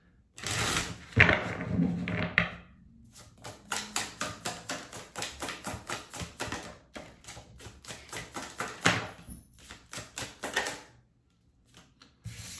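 A tarot deck being shuffled by hand: a run of quick card clicks, about five a second, that stops about a second before the end.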